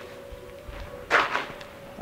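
Quiet room tone with a faint steady hum, and a brief scuffing noise about a second in.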